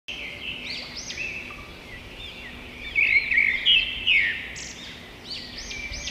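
Small birds chirping: a run of short, quick chirps that rise and fall, loudest from about three to four and a half seconds in.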